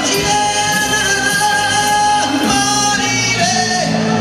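A male singer singing a copla through a microphone, holding long sustained notes over instrumental accompaniment.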